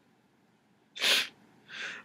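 A man's single sharp huff of breath through his nose and mouth into his hand about a second in, an exasperated snort of laughter, followed by a softer breath near the end.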